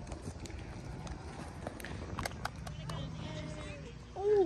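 Distant shouts and chatter of kids playing flag football on an open field, with a few short sharp clicks in the first half and one drawn-out call near the end.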